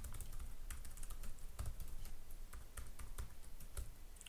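Typing on a computer keyboard: a run of quick, uneven keystrokes.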